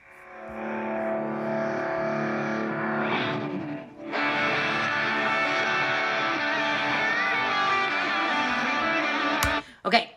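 Isolated electric guitar track, separated from a full song by AI stem-extraction software, playing back a guitar solo: it fades in at the start, drops out briefly a little before four seconds in, then carries on until playback stops with a click shortly before the end.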